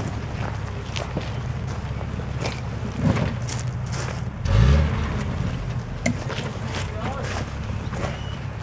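Jeep Cherokee XJ engine pulling at low revs as it crawls over rocks, with a brief rev that rises in pitch about four and a half seconds in, the loudest moment. Scattered short crunches and clicks sound over it.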